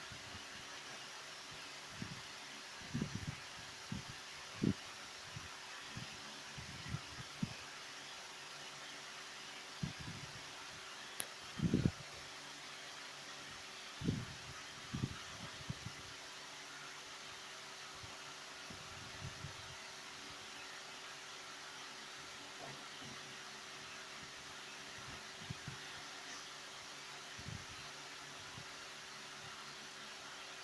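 Steady fan-like hiss with scattered soft, low thumps, the loudest about twelve seconds in.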